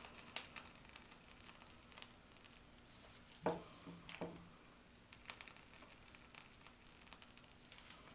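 Faint crinkling and light scattered clicks from a piping bag being squeezed as a zigzag border of icing is piped.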